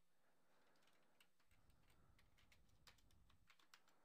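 Faint computer keyboard typing: irregular single key clicks, more frequent in the second half.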